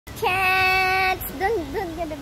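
A high voice holds one long, steady note for about a second, then makes a few short notes that swoop up and down, like a drawn-out, sing-song call.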